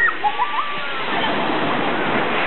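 Small sea waves washing and breaking on the shore, a steady rushing of water.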